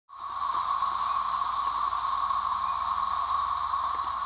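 Dense chorus of periodical cicadas: an awful, steady drone held on one pitch, with a higher hiss above it, fading in at the very start.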